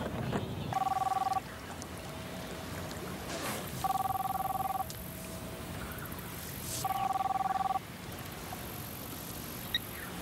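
Telephone ringing with a two-tone electronic trill: three rings, each under a second long, about three seconds apart.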